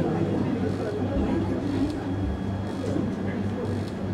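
Indistinct, fairly quiet speech in a small room over a steady low hum.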